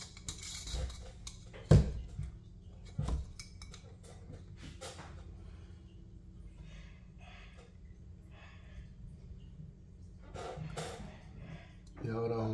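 Hard plastic lamp parts and wires being handled on a worktop: scattered small clicks and knocks, the loudest a sharp knock about two seconds in and another about a second later, over a low steady hum.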